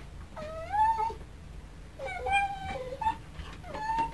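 Miniature dachshund whining in long, drawn-out cries: the first rises in pitch about half a second in, a second, longer one is held at about two seconds, then two short ones follow near the end.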